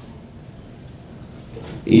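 A pause in amplified speech, with faint room tone and PA hiss. Near the end a man's voice comes in through the loudspeakers, starting a chanted, held line of Arabic recitation.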